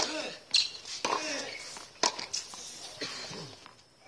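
A tennis point: a serve followed by a short rally, heard as several sharp racket-on-ball hits at uneven spacing, with short falling vocal cries after some of the hits. The sounds die away near the end as the point finishes.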